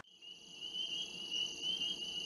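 A steady, high-pitched insect chorus like crickets: several high notes held together with a fine, rapid pulse.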